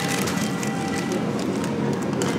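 Background music playing over the low rolling rattle of a wire shopping cart being pushed.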